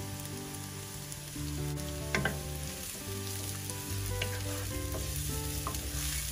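Chopped garlic and onions sizzling in hot oil in a nonstick frying pan, stirred with a wooden spatula, with a few short scrapes and knocks.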